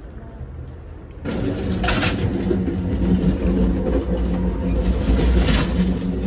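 Running noise inside a moving Amtrak Auto Train car: a steady low rumble and hum with rattling. It jumps suddenly louder about a second in and stays loud.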